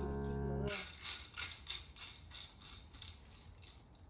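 Background music ends under a second in. Then a dog noses through a fabric snuffle mat for its kibble, making quick sniffs and rustles about three a second that grow fainter.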